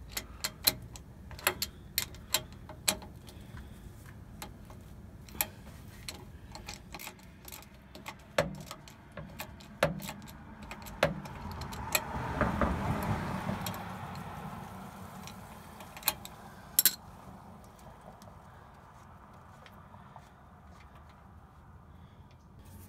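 A 3/8-inch ratchet clicking in short, irregular runs as it turns the plug in a Ford F-150's rear differential cover. A louder rustling swell comes about halfway through, and a few sharp clicks land near three quarters in.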